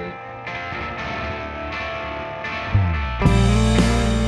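Recorded rock song: reverb-drenched electric guitar chords, joined by the full band with drums about three seconds in, where it gets louder.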